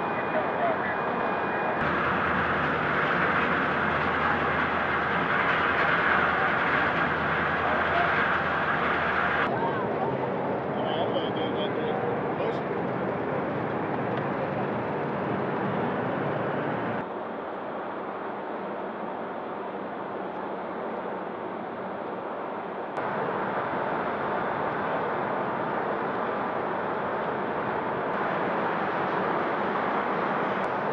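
Outdoor waterfront ambience, a steady noisy hiss with indistinct background voices. It changes abruptly several times.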